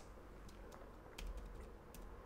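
Faint computer keyboard key presses deleting characters in a text file: a handful of light, separate clicks, one a little past the middle louder than the rest.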